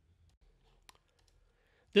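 Near silence with one faint, short click a little under a second in; a man's voice starts right at the end.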